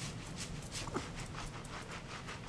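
Hands scrubbing shampoo lather through a man's wet hair and scalp: quick, even, hissing strokes, about four a second. A brief rising squeak about a second in.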